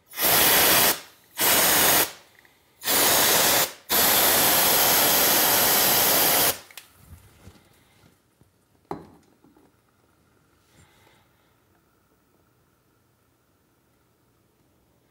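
Can of compressed-air duster held upside down and spraying onto a heated stainless steel fridge door to shock-cool the dented metal: four hissing bursts, the last about two and a half seconds long. A single click follows a couple of seconds later, then quiet room tone.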